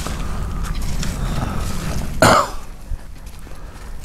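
A person gives one short, sharp cough or throat-clear about two seconds in, the loudest sound here, over the scuff of footsteps on a dirt road.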